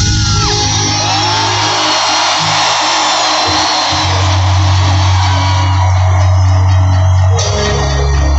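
Live rock band playing in an arena, heard from far back in the hall, with the crowd screaming and singing along over the music. The bass shifts to a lower note near the end and the crowd noise thins.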